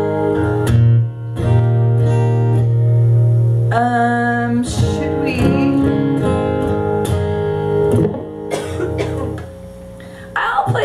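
Acoustic guitar strummed and picked, chords ringing out between strokes. The playing dies down shortly before the end.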